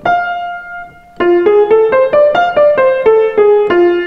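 Grand piano played single notes: a held high F rings and fades, then a scale runs from F up an octave and back down to F at about four notes a second, ending on a held low F. It is the F major blues scale, with its added flat third.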